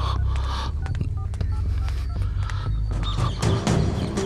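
Film background score with a deep, steady drone, overlaid by short, irregular electronic beeps and clicks.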